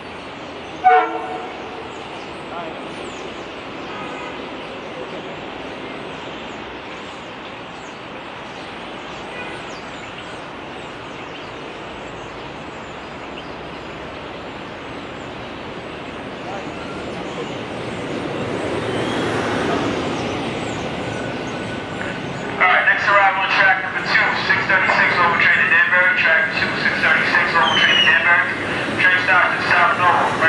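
An electric commuter train gives one short horn toot about a second in, then rolls into the platform, its noise building toward about twenty seconds. From about 22 seconds a station public-address announcement plays over it.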